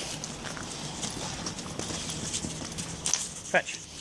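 Footsteps crunching and scuffing on icy, slushy snow over paving stones, a run of small irregular steps.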